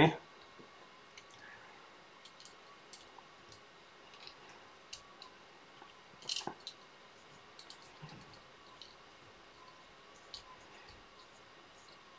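Faint, scattered small clicks and ticks of fly-tying tools and materials being handled at a tying bench, with a louder cluster of clicks about six seconds in.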